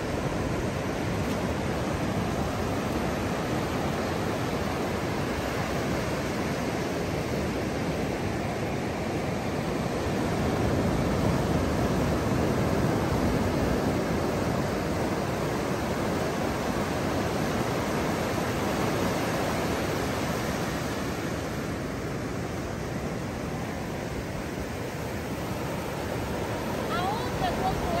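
Ocean surf breaking and washing up a sandy beach, a steady rush of water that swells about ten seconds in and eases off for a few seconds after twenty.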